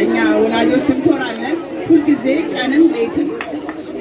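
Speech only: a woman talking in Amharic into a handheld microphone.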